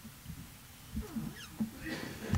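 Quiet pause in a panel discussion: low room noise with a few soft knocks from about a second in and a brief faint voice.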